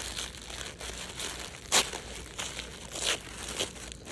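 Dark packaging wrap crinkling as it is gripped and handled, a run of irregular rustles and crackles. The loudest is a sharp crinkle a little under two seconds in.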